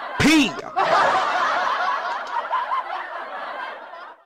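Laughter: a short loud laugh near the start, then a longer stretch of softer, breathy laughing that fades away before it cuts off.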